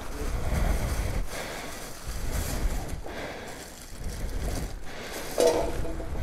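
Thin plastic bags crinkling and rustling as they are handled, over a low rumble. A brief voice-like sound comes about five and a half seconds in.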